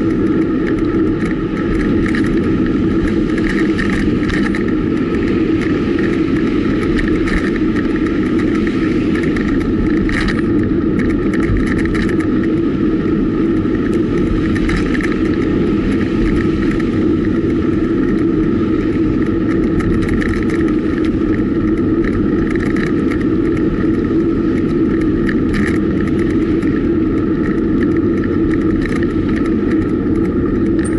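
Steady rush of wind and road noise from a road bike being ridden along a city street, picked up by a camera mounted on the bike, mostly a low rumble with an even level throughout.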